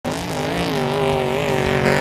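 An engine running at high revs, its pitch holding nearly steady with a slight waver.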